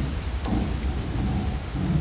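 A steady low rumble picked up by the microphones, with faint muffled sounds over it.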